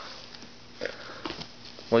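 Quiet room with a short, faint breathy noise a little under a second in and a few faint soft clicks after it; a voice begins speaking at the very end.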